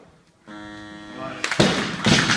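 A steady held tone sounds for about a second, then a loaded barbell is dropped from overhead onto the lifting platform, its rubber bumper plates crashing down loudly and bouncing.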